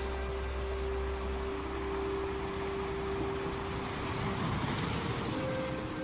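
Ambient sleep music: long held synth-pad notes over a steady wash of noise, the noise swelling and fading about four to five seconds in as the held note changes to a higher one.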